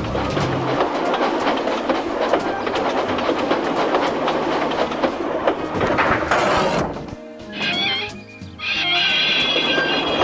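Train sound effects of wagons rolling along rails with a rapid clickety-clack. About six seconds in there is a brief hiss, then high steady squealing tones near the end.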